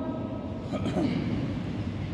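A pause between chanted phrases of the call to prayer: the echo of the last phrase dies away at the start, leaving a steady low rumble of room noise in the mosque.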